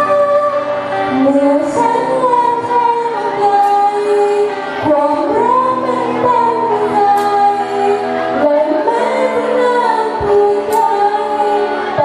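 A teenage girl singing into a handheld microphone, holding long notes and sliding between pitches, over a live student band with electric bass and drums.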